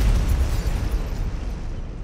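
Cinematic explosion sound effect: a deep boom, loudest at the start, its low rumble slowly fading away.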